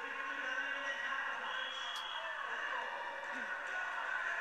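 Steady hubbub of many voices from a crowd watching a wrestling match in a gym, heard through a TV set's speaker, with one short click about two seconds in.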